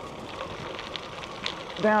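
Knobbly bicycle tyre rolling over gritty tarmac: a steady hiss with scattered faint ticks.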